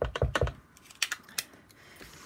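Quick light taps of a rubber stamp on a clear acrylic block being inked against a small ink pad, followed by two sharper clicks about a second in.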